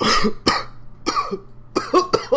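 A person coughing hard several times in quick succession, a fit of about five rough coughs in two seconds.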